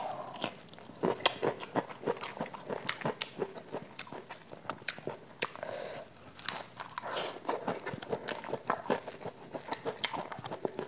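A person chewing and biting food close to a clip-on microphone, crunching fresh lettuce and green chili, with many sharp, irregular wet mouth clicks.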